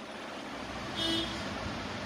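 Steady background hum and hiss, with one short tone about a second in.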